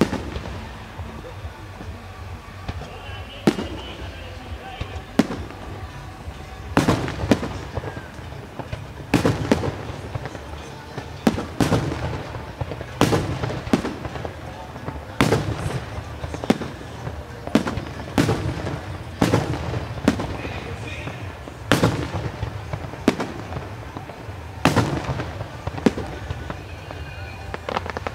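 Aerial firework shells bursting overhead in a series of sharp bangs. Only a few come in the first seconds, then they follow every second or two.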